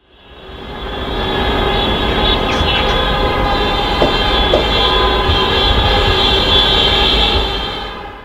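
Many car horns sounding together in a steady, held chorus over the low rumble of a column of passing cars. It fades in at the start and fades out near the end.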